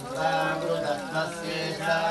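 Male voices chanting Sanskrit mantras, with held, sung pitches.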